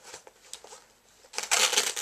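Rustling and handling of items in a fabric backpack pocket: faint small ticks at first, then a loud scratchy rustle of about half a second near the end.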